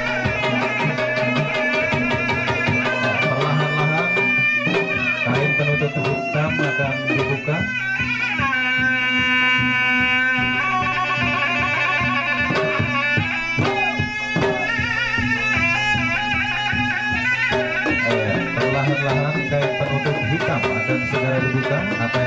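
Traditional pencak silat music: a reedy wind instrument plays a continuous, wavering melody with a long held note near the middle, over quick strokes of barrel hand drums.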